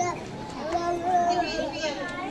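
Many children's voices chattering and calling out over one another, a steady crowd of overlapping young voices with no music.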